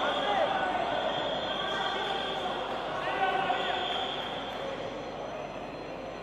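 Several indistinct voices of people calling out and talking, overlapping, in a large sports hall.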